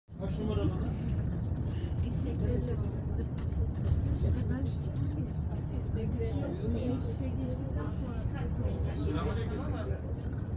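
Steady low road rumble inside a moving vehicle, with people's voices talking indistinctly over it.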